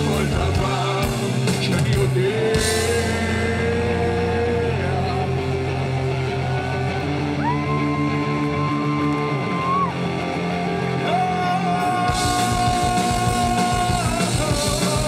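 Live rock band playing, with long held, gliding lead notes over a steady bass and keyboard bed. The drums drop out a couple of seconds in and come back in near the end.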